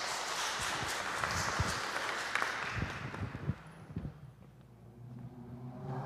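A small group clapping, a dense patter that lasts about three and a half seconds and then dies away.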